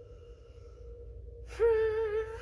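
A woman humming a thinking 'hmm' with closed lips, a held note with a slight wobble, starting about one and a half seconds in; before it, only quiet room tone with a faint steady tone.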